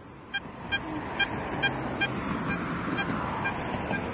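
Faint short electronic beeps from a metal detector as its coil is swept over grass, repeating evenly about twice a second, over a steady low background rumble like distant traffic.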